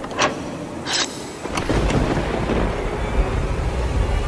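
Horror logo-intro sound effects: a few sharp hits in the first two seconds, then a deep, thunder-like rumble that sets in and carries on underneath.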